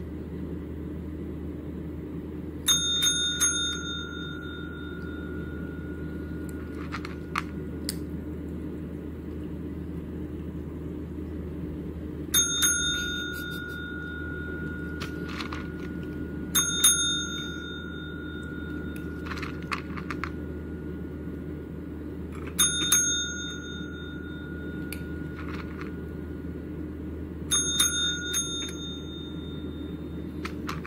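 A pet call bell (a desk-style tap bell) is pressed by a kitten five times at uneven intervals. Each press gives a couple of quick dings that ring on for about a second. A steady low hum runs underneath.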